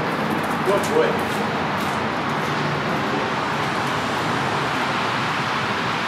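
Steady background noise of street traffic, even and unchanging, with a single spoken word about a second in.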